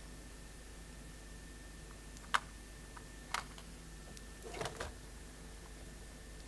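Clicks on a laptop used to scroll and run a notebook: two sharp single clicks about a second apart, then a quick cluster of softer clicks near the end.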